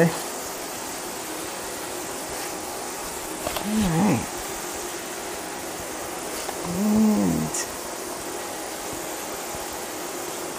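Two short wordless vocal sounds, each about a second long and gliding up then down in pitch, about four and seven seconds in, over a steady hiss.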